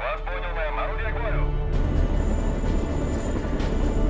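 A short, band-limited voice over a radio, then from about two seconds in the loud, low rumble of a helicopter, with film score underneath.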